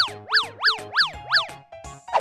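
Cheerful background music with a cartoon sound effect laid over it: five quick pitch sweeps, each rising and falling, about three a second, in the first second and a half.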